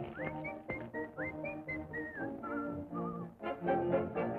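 A whistled tune of short notes, several sliding up into pitch and one falling away, over the cartoon score's orchestral accompaniment.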